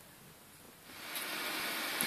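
Near silence for about the first second, then a steady hiss fades in and holds.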